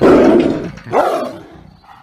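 A lion snarling and roaring, two loud rough bursts: one right at the start and a second about a second in that fades away.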